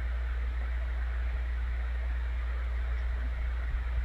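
A steady low hum under a faint even hiss, unchanging throughout: background noise from an open microphone on a video call.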